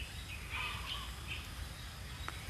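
A pause in a man's talk: faint background noise with a few faint, short high chirps.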